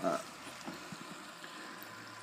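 Faint, steady hiss of air bubbling through the water of an aerated hydroponic bucket, with a few light ticks.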